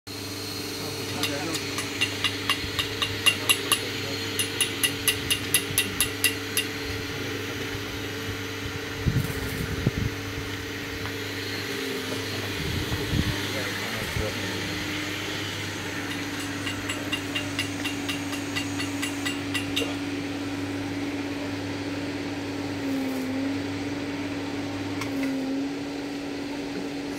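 Steady hum of an automatic mawa kettle's motor-driven stirrer, with regular ticking about three or four times a second, first in the early seconds and again for a few seconds in the middle.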